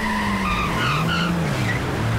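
Car engine revving up and down as the car pulls away, with tires squealing.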